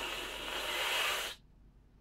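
A man's long breath out through the mouth, unvoiced and hissy, lasting about a second and a half and then cutting off suddenly.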